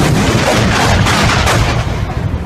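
Thunderclap from a lightning strike very close by, picked up on a phone. It hits all at once at full loudness and stays loud for nearly two seconds before easing off near the end.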